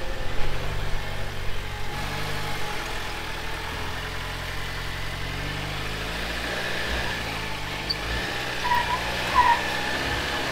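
Stock Jeep Wrangler engine running steadily at low revs as it crawls up a steep slickrock slope.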